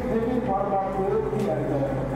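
An indistinct voice whose pitch wavers up and down, over a steady low hum.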